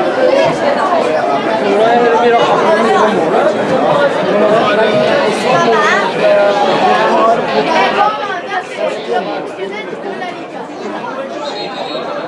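A crowd of spectators talking and calling out over one another, with several voices at once close by. The chatter eases to a lower level for the last few seconds.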